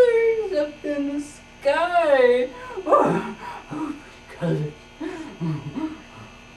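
Speech in a puppet's put-on cartoon voice, with a strongly wavering, drawn-out stretch about two seconds in, over a steady low electrical hum.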